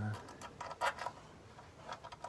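A few light clicks and scrapes of a small metal screw and parts being handled as the screw is started by hand into the gearbox's fluid filter.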